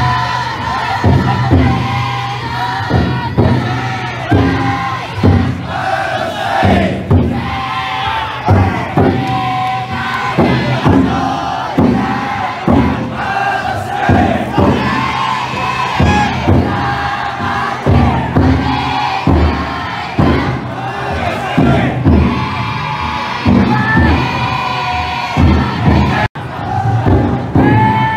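Futon-daiko float bearers chanting and shouting together in call-and-response, over the float's big drum beaten in a steady rhythm of about one to two strokes a second.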